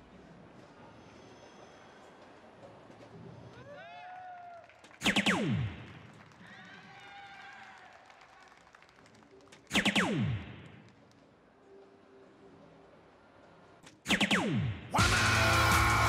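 DARTSLIVE soft-tip electronic dartboard playing its hit effect three times, each a short, loud falling electronic swoop, about five, ten and fourteen seconds in, as three darts land in triple 20. Just before the end a loud electronic award fanfare starts, the board's signal for a 180.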